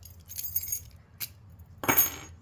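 Small metal lock-picking tools and a euro cylinder lock clinking together as they are handled: a light metallic rattle, one sharp click, then a louder clink that rings briefly near the end.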